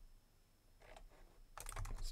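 Faint computer keyboard keystrokes, a quick run of clicks in the last half second as the code editor is navigated by key commands.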